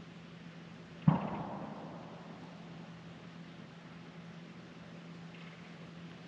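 A single sharp knock about a second in, fading away over about half a second, against a steady hiss of wind noise and a faint low hum.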